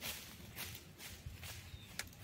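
Footsteps crunching on dry fallen leaves, a few faint irregular steps.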